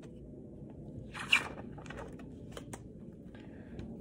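Paper rustling as picture-book pages are turned and handled: one short rustle about a second in, then a few light clicks and taps.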